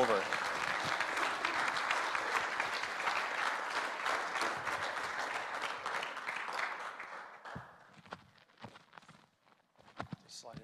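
Audience applauding in an auditorium at the end of a talk. The clapping is dense for about seven seconds, then dies away, leaving a few scattered small knocks.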